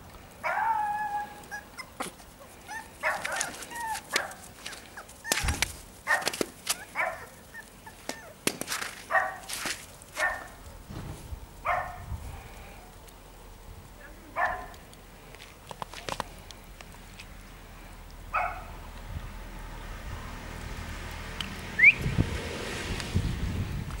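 Small Maltese dogs barking and whining in a run of about a dozen short, irregular calls, the first one drawn out. The calls die away after about fifteen seconds.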